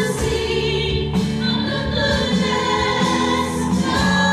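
Live church worship band playing a gospel song: several voices singing together over acoustic guitar, bass guitar and keyboard.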